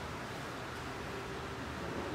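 Steady room noise, an even hiss with no distinct sounds in it.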